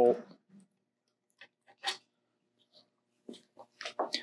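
A few faint, separate clicks and light taps of small metal parts being handled as the CZ Scorpion's cross bolt is backed out with a T-handle hex key, with one sharper click about two seconds in and a quicker run of taps near the end.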